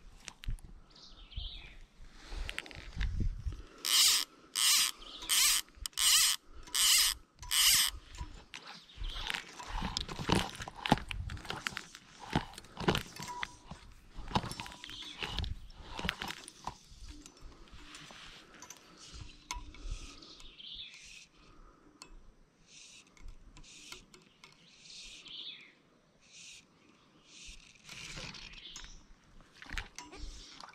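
Fly reel ratcheting in six short, loud buzzes about two-thirds of a second apart as line is pulled off it in arm-length strips. These are followed by softer scattered clicks and rustles of the rod and line being handled.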